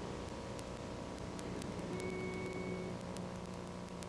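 Steady low hum and hiss of an old analog recording with faint hall noise, before any singing. A faint short tone sounds about halfway through, with a few soft clicks.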